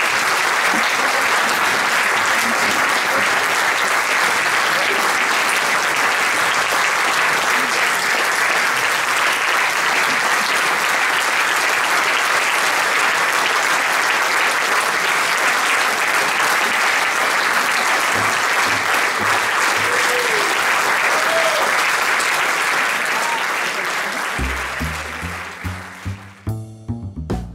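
Audience applauding steadily, fading out near the end as music starts.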